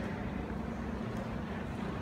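Steady room tone: a low, even rumble and hum with no distinct events.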